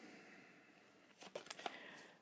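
Near silence, then in the second half a few short, soft clicks of tarot cards as one is drawn off the deck and turned over.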